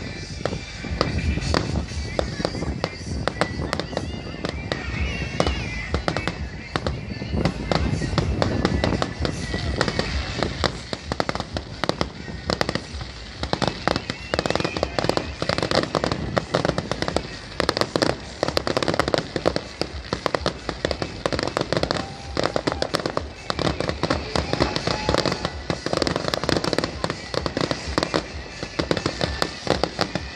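Fireworks display: aerial shells bursting in a rapid, almost unbroken barrage of bangs and crackling that runs through the whole stretch.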